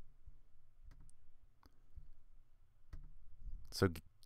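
Three faint computer mouse clicks, spread about a second apart, over a low steady hum.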